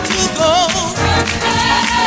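1972 gospel choir recording: voices sing sustained notes with wide vibrato over a full band, with a tambourine shaking in a steady rhythm.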